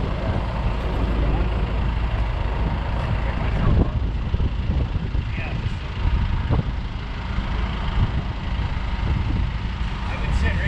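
Heavy diesel engines running steadily at close range: the idling tri-axle dump truck and the CAT 308 mini excavator beside it.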